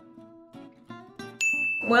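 Quiet short musical notes, then about one and a half seconds in a bright bell-like ding sound effect strikes and holds one high, ringing tone.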